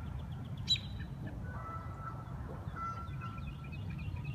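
Geese honking, with small birds chirping, over a steady low background rumble. A single sharp click comes just under a second in.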